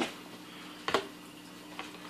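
A single light click about a second in and a fainter tap near the end, over a faint steady hum.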